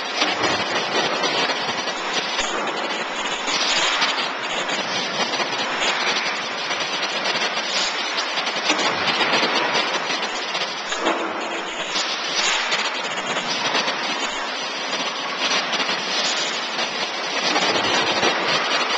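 Steady industrial din of a factory floor, an even hissing machinery noise with small swells in loudness.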